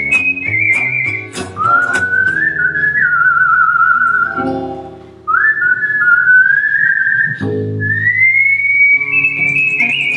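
A woman whistling a jazz melody into a microphone: a clear pure tone with vibrato on the held notes, pausing briefly about halfway through. Underneath, acoustic guitars play a strummed gypsy jazz rhythm.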